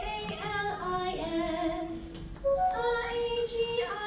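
A group of young girls singing a song together, a melody of held notes stepping up and down.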